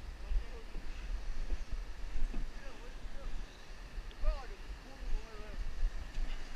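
Wind rumbling on the microphone over the steady rush of a fast, flooded creek, with a few low knocks as the kayaks are worked into the water.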